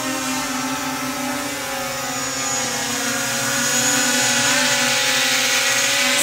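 Small quadcopter drone's propellers buzzing steadily in flight while it carries a hanging ghost costume, growing louder in the second half.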